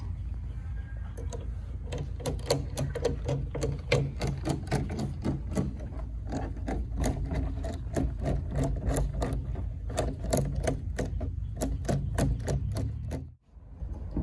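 Worm-drive band clamp on a Fernco rubber pipe coupling being tightened with a screwdriver: a rapid, steady run of clicks, about four a second, as the screw turns. The clicks stop suddenly near the end.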